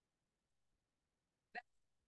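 Near silence, broken once about one and a half seconds in by a very short vocal sound from a person.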